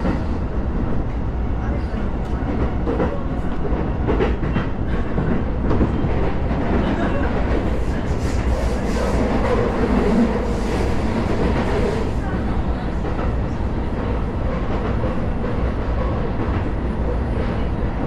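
Sotetsu commuter train running at about 55–60 km/h, heard from inside the carriage: a steady rumble of wheels on rail with a few clacks from the rail joints, a little louder around the middle.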